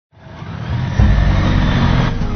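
Motorcycle engine and riding noise fading in, then running loudly from about a second in.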